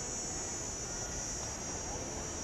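Steady, high-pitched chorus of insects, with a low rumble underneath.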